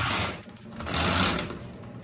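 Steering being turned by hand through the newly fitted column: a rapid mechanical rattle from the manual steering linkage and front wheels, in two bursts about a second apart.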